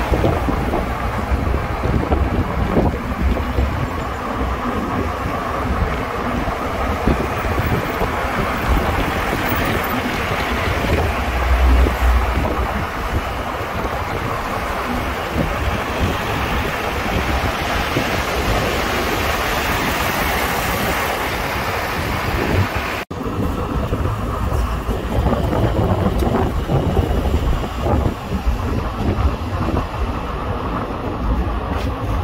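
Wind rushing and buffeting the microphone through the open window of a moving taxi, over steady road and engine noise. After a sudden cut about three-quarters of the way through, the wind hiss drops and the lower rumble of the car and street traffic remains.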